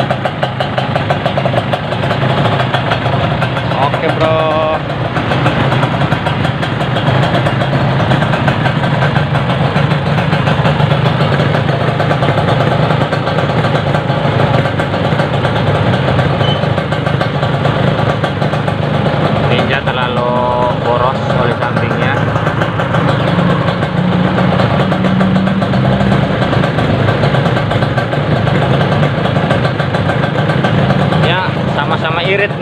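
Two single-cylinder two-stroke motorcycle engines, a Kawasaki Ninja 150 R and a Yamaha RX-King, idling together at a steady, even level.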